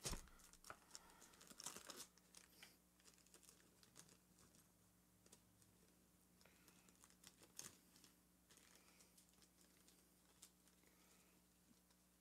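Faint handling of a fishing lure's retail package as it is opened: a burst of crackles and short clicks in the first couple of seconds, then scattered small clicks.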